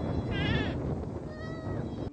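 Two bleats from livestock over steady background noise: the first is short and quavering, the second longer and steadier, dropping in pitch at the end.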